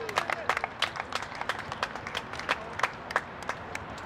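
Spectators clapping for a goal just scored: separate sharp claps, several a second, thinning out near the end.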